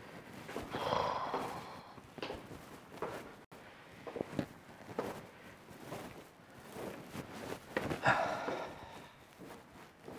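Footsteps going down stone spiral stairs, about two steps a second, with two loud breaths, one about a second in and one near the end.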